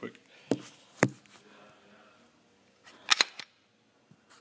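Glock 17 pistol slide being racked by hand: a metallic click as the slide is drawn back, then a sharp, louder snap as it slams forward about a second in. A second quick cluster of metal clicks follows about three seconds in.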